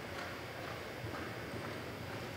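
Horse's hoofbeats on the soft dirt footing of an arena as it lopes: a soft, muffled beat about twice a second.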